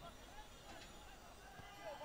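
Faint shouts and calls of football players on the pitch, heard from a distance over a low hiss.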